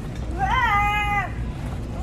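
A small child's single high-pitched, drawn-out vocal sound, about a second long, rising slightly, holding, then dropping at the end.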